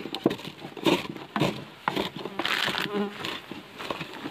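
Wooden pestle knocking and grinding in a bamboo-tube mortar, pounding chillies in irregular strikes about twice a second, with a buzzing sound around the middle.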